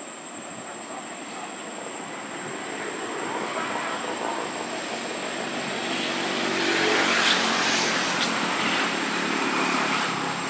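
A distant engine passing by, growing steadily louder for about seven seconds and then easing off slightly, over a steady high-pitched whine.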